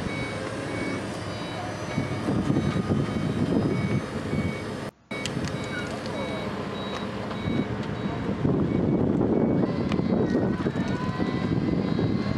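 Wheelchair lift on a van's rear door beeping its warning tone in a steady repeating pattern while the electric lift runs, lowering the platform to the ground. The sound breaks off for an instant about five seconds in, and the beeping fades in the second half as the lift keeps running.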